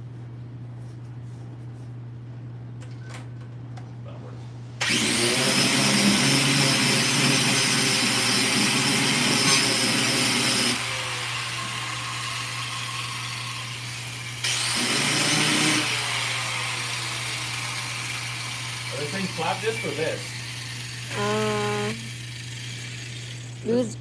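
Handheld power grinder shaping a Mustang's rear bumper around the exhaust tip. It starts about five seconds in and runs loudly with a high whine for about six seconds, then winds down more quietly. It gives a second short loud burst about halfway through.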